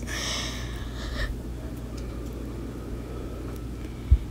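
Water splashing and sloshing in a sink as a hand churns it into waves, loudest for about the first second, then fainter sloshing.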